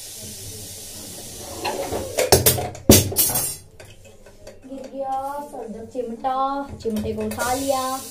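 Metal cookware being handled as a pot lid is taken off: a low steady hiss at first, then a quick cluster of sharp metallic clanks about two to three and a half seconds in.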